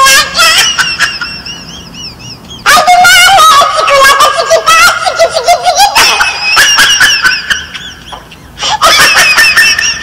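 High-pitched laughter in long, wavering peals, breaking off briefly about three seconds in and again shortly before the end.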